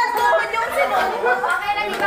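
Several people talking over one another at once: a group's lively chatter.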